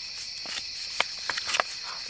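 A steady chorus of night insects, crickets among them, with several short sharp clicks and rustles as a hand rummages in an opened small plastic screw-top jar.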